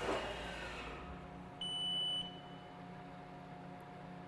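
Haas TM-1p CNC mill's Z axis traveling to its home position, a low rumble in the first second over the machine's steady hum. About a second and a half in there is a single high electronic beep from the control, lasting about half a second.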